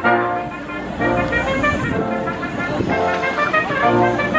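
Brass ensemble of trumpets, French horn, tuba and trombones playing together, sustaining chords and moving through held notes.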